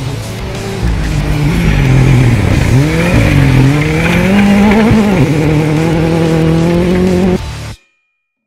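Ford Fiesta rally car engine at high revs, its pitch dropping and climbing again several times as the driver changes gear and lifts off. The sound cuts off abruptly near the end.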